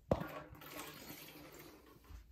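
A small glass bottle knocks against the plastic fill well of a humidifier, then liquid trickles from the bottle into the humidifier's reservoir for about a second and a half.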